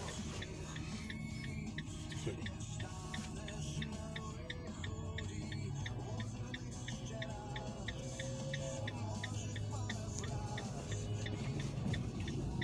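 Music playing inside a car cabin, with a car turn-signal indicator ticking steadily over it, about two ticks a second.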